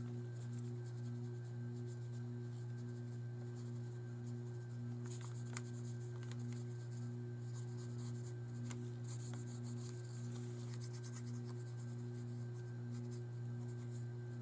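A fine paintbrush working wet watercolour on paper, with faint scratchy strokes now and then. Under it runs a steady low hum with a softly pulsing tone.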